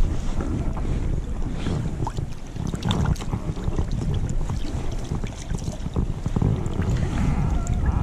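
Wind buffeting the microphone in low gusts over the rush of a shallow river, with a few faint clicks.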